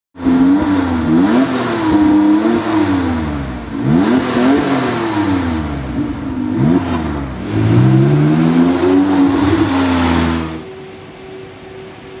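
W Motors Lykan HyperSport's twin-turbo flat-six engine revving hard several times, its pitch climbing and falling with each rev. The loud engine sound drops away about ten and a half seconds in, leaving a quieter steady hum.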